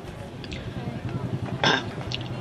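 A pause in a man's speech through a headset microphone: a low steady background hum with a faint murmur, and a short breathy vocal noise from the speaker near the end.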